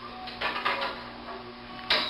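Light metallic clicks and rattles from the GutterKeeper cart's tubular handle and brake as the brake is applied, over a faint steady hum.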